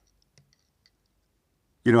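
Near silence with two faint small clicks in the first second, then a man's voice starts near the end.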